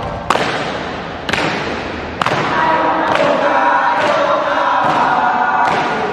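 A group of young voices chanting and singing a scout yell in unison. It opens with three sharp percussive hits about a second apart that ring out in a reverberant hall, and another hit comes near the end.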